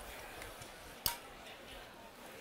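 One sharp clink of a knife or fork against a porcelain plate about a second in, with a short ring after it, over low background noise.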